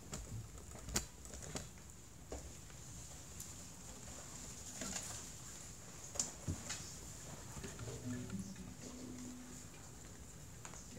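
Scattered knocks and clicks of an acoustic guitar and gear being handled, with a few soft guitar notes near the end.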